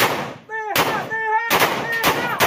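Rifle shots fired close by, several in quick succession: a loud crack right at the start, another under a second in, and a quick pair about a second and a half in, each with a trailing echo.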